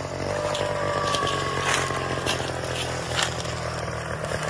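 A backpack leaf blower's small two-stroke engine running steadily at working speed as it blows a fire line, with scattered short crackles and scrapes from the leaf litter over it.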